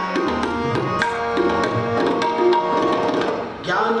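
Tabla and Yamuna harmoniums playing an instrumental passage of shabad kirtan: crisp tabla strokes over the harmoniums' held reedy chords. The music dips briefly near the end, and a man's singing voice comes in.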